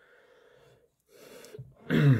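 Faint rustling handling noise as a bottle is moved about, then near the end the sudden start of a loud vocal sound from a man, falling in pitch.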